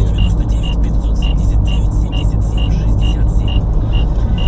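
Steady engine and road rumble inside a moving car's cabin, with a short high electronic beep repeating evenly about twice a second.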